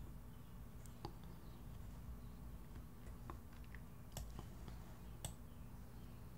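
A few faint, separate computer mouse clicks over a low steady room hum.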